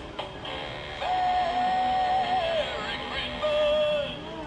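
Knock-off animated plush reindeer toy playing a pop song with singing through its small built-in speaker. About a second in, the voice holds one long note for over a second, and a shorter note follows near the end.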